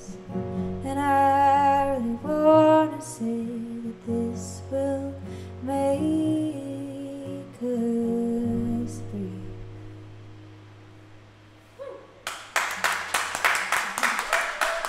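Acoustic indie-folk song ending on two acoustic guitars with a woman singing; the last chord rings and fades out over a few seconds. About twelve seconds in, applause starts.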